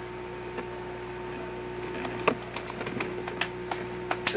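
Computer keyboard keys typed in quick, irregular clicks starting about two seconds in, over a steady hum. Someone is working the keys of a crashed call-screening computer to get it running again.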